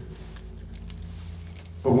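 A pause in a man's speech filled by a low steady hum, with a few faint light clicks early on; his voice starts again just before the end.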